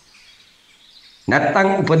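A man's speech with a brief pause: about a second of faint background hiss, then the speech starts again a little over a second in.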